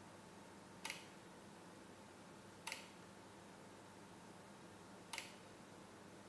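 Three short sharp clicks, spaced about two seconds apart, over a faint steady electrical hum.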